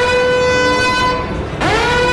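Siren sound effect: a pitched tone that winds up in pitch and then holds steady, twice, the second wind-up starting near the end.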